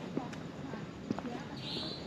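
Footsteps on a brick-paved path, heard as a few sharp taps, with faint voices in the background. A short high chirp comes near the end.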